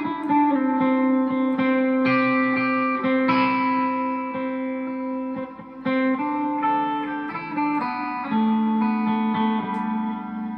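Clean electric guitar picking the notes of the G major scale across three strings, one note after another, each ringing on under the next so that neighbouring notes sound together like chords.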